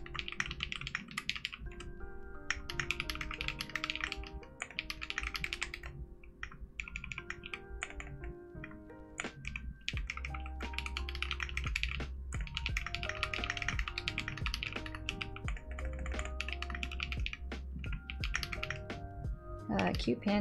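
Fast typing on a mechanical keyboard: runs of rapid keystroke clicks, each a few seconds long, broken by short pauses. Background music plays underneath.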